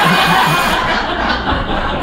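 A cordless drill running with a steady whine, cutting off under a second in, while an audience laughs.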